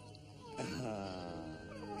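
A drawn-out, moaning "oh" in a character's voice, sliding slowly down in pitch for over a second, with a cough or "uh" near the end.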